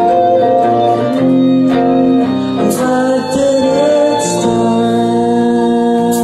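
Live guitar and violin duo playing, the violin bowing long sustained notes over the guitar and the notes changing every second or so.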